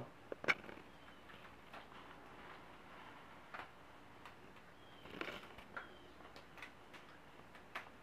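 Quiet handling sounds as rubber bands are stretched over a towel-wrapped plastic steamer nozzle attachment: scattered small clicks and light rustles, the sharpest click about half a second in and a few more together around the middle.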